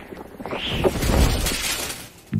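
Cartoon sound effects: a metal shopping cart loaded with cans and fruit rattling and clattering, building about half a second in to a loud crash with much clinking and breaking. The noise cuts off suddenly near the end.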